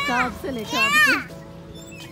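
Children's voices calling out at a playground: two high-pitched calls, the second and louder one about a second in, then quieter chatter.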